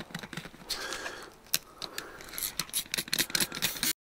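Faint, scattered clicks and light scraping from hands at work on a car door and window, handling a bottle of cleaner. The audio drops out abruptly right at the end.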